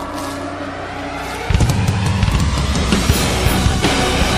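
Live symphonic metal band: a quieter intro with a rising sweep, then the full band with pounding drums and heavy distorted guitars crashes in about a second and a half in.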